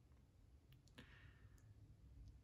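Near silence: quiet room tone with a few faint clicks around the middle.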